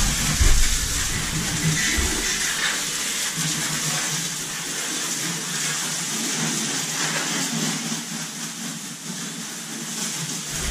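Garden hose spraying water onto the floor inside an enclosed cargo trailer: a steady hiss of spray, with a few low bumps in the first couple of seconds.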